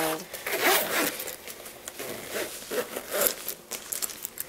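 Metal zip on a fabric Orla Kiely train case being drawn shut around the top compartment: a run of scratchy zipping with handling rustle.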